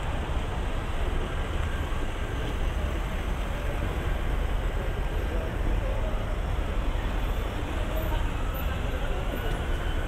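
Busy city street ambience: car traffic driving past with a steady low rumble of engines and tyres, mixed with passers-by talking.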